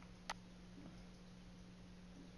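Near silence with a faint steady hum, broken by one short, sharp click about a third of a second in.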